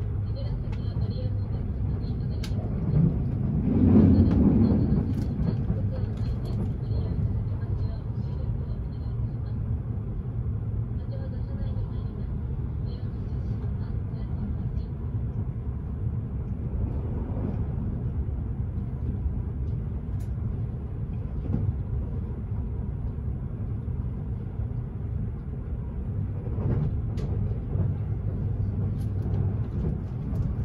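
Steady low rumble and running noise of the Kintetsu Hinotori (80000 series) electric express train travelling at speed, heard inside the passenger cabin. A louder swell of rumble comes about four seconds in, then settles back to the steady running noise.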